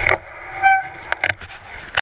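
A mountain bike rolling over a leaf-covered forest trail, with rattles and sharp knocks. A brief, steady, high squeal comes a little over half a second in.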